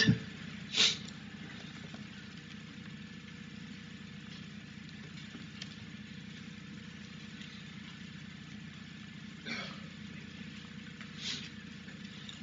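Quiet room tone with a steady low hum, broken by a few brief soft noises: one about a second in and two more near the end.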